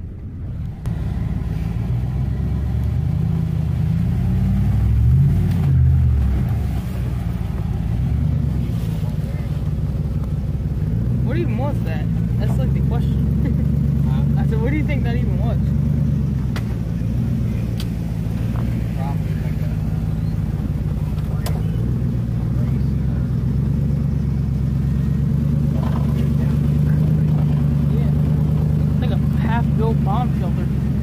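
Pickup truck engine running, heard from inside the cab as the truck drives off-road; it revs up and eases back about five seconds in, then pulls steadily.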